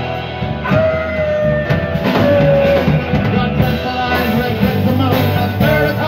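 A live rock band playing: electric and acoustic guitars over bass guitar, with a long held note from about a second in.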